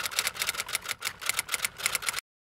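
Typing sound effect: a rapid, even run of key clicks, about seven a second, that stops suddenly.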